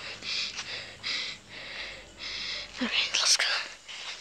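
A person whispering in three short breathy bursts, then a louder breathy voiced exclamation, like a gasp, about three seconds in.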